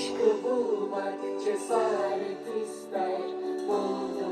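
Music with a melody playing through a cheap portable cylindrical Bluetooth speaker, streamed from a phone. The owner finds its sound quality a little lacking.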